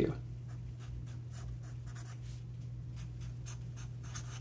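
Sharpie felt-tip marker writing on paper in a run of short strokes, over a steady low hum.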